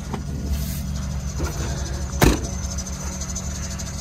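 Chevrolet Express 3500 van's 6-litre Vortec V8 idling as a steady low hum, with one sharp knock about two seconds in.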